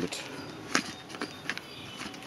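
One sharp click about three-quarters of a second in, followed by two fainter clicks, from the press-stud fasteners of an Ortlieb handlebar bag being handled.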